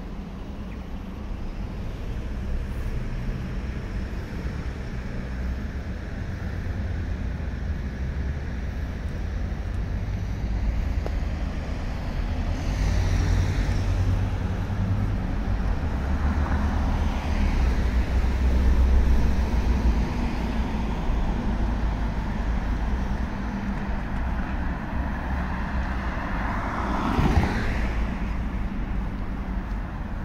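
City road traffic: a steady low rumble of cars on a multi-lane street, swelling as vehicles pass around the middle, with one closer car going by near the end.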